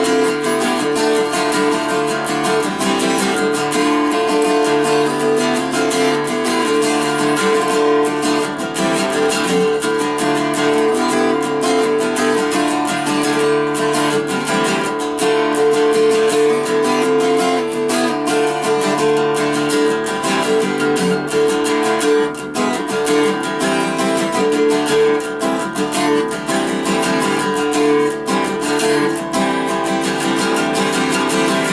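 Acoustic guitar laid flat across the lap and strummed without a break, chords ringing under a steady run of strokes; no singing.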